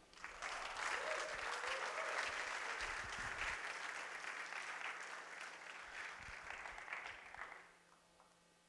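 Audience applauding, starting right away and dying out about seven and a half seconds in.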